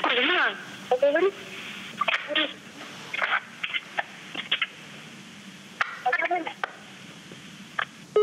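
A woman's voice on a mobile phone call played through the handset's speaker, thin and tinny. She talks briefly at the start, then only short, scattered snatches of voice and muffled noise come over the line while the phone is handed on.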